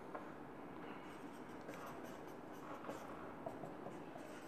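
Marker pen writing numbers on a whiteboard: a few faint, short scratching strokes.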